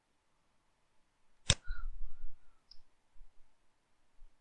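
A single sharp computer mouse click about a second and a half in, followed by a brief low thud and, a second later, a faint tick.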